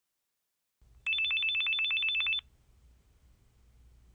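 Electronic telephone ring: a rapid trill of two high tones pulsing about ten times a second for just over a second, then stopping, leaving a faint low hum.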